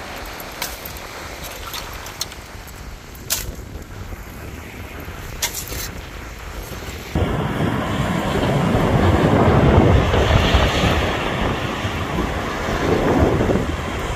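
Wind on the microphone with a few sharp clicks. About halfway through, a sudden change brings in louder sea waves breaking on a sandy shore, swelling twice.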